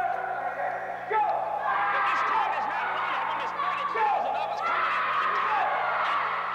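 Voices of a karate class calling out short shouts at a steady pace, about one every second, each starting sharply and falling in pitch.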